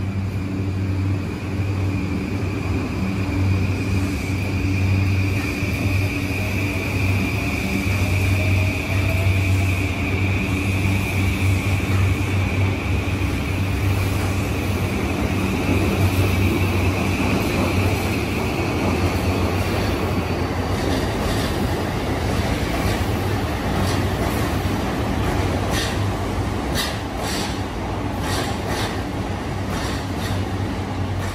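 JR East E235 series 1000 subseries electric train pulling away and gathering speed, its motor whine rising in pitch over a steady low hum. In the second half the wheels click over rail joints as the cars pass.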